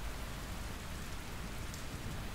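Steady rain outside the room, heard as an even hiss with no distinct drops or thunder.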